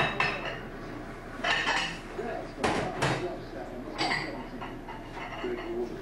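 About five sharp clinks and knocks of hard objects striking each other, spread unevenly over the few seconds, each with a short ring.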